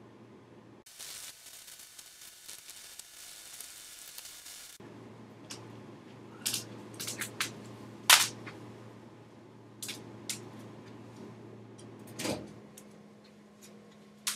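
A steady hiss for about four seconds, then scattered clicks and knocks as a person gets up from a studio chair and moves about near the camera, the loudest knock about eight seconds in. A low steady hum runs underneath.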